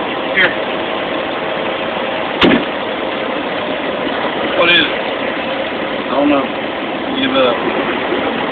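Truck engine running at low revs, heard from inside the cab, with a single sharp click about two and a half seconds in.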